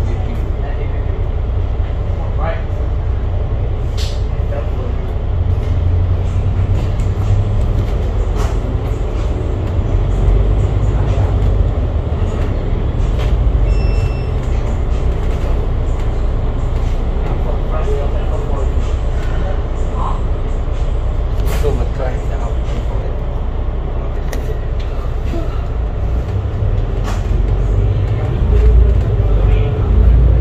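Alexander Dennis Enviro500 double-deck bus running in slow traffic, heard inside the cabin from the upper deck: a steady low engine and road drone with occasional small rattles and clicks, growing louder near the end as the bus pulls away.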